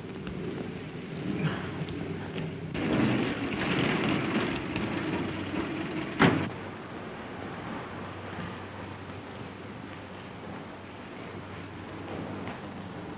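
A motor car running on a street, louder for a couple of seconds, then a car door shut with one sharp bang about six seconds in, over the hiss and rumble of a 1930s optical film soundtrack.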